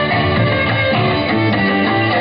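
Live band playing, with guitar and violin carrying sustained melody notes over changing chords.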